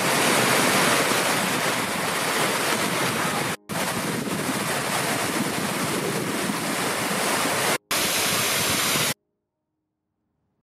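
Rushing water of several small waterfalls pouring over rock into a pool: a loud, steady hiss, broken by two brief gaps and stopping suddenly about a second before the end.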